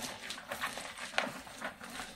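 Hands kneading and squeezing salted shredded cabbage and grated carrot in a plastic bucket: wet rustling and crunching of the shreds, with a few sharper crunches, as the cabbage is pressed to draw out its juice for sauerkraut.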